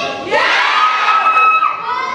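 A group of children shouting and cheering together, swelling sharply about a third of a second in, with one voice holding a long shout through the middle.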